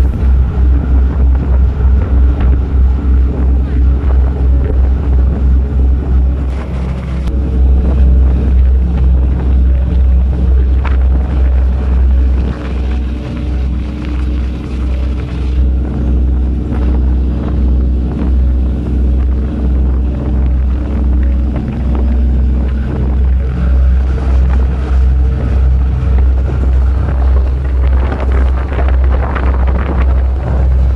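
Offshore vessel's engine running with a deep, even throb, mixed with wind buffeting the microphone.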